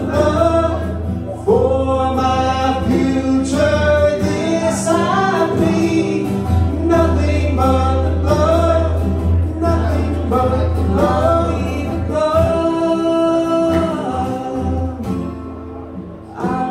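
Live gospel worship song: male voices singing a slow melody with held notes over strummed acoustic guitar and a steady low accompaniment.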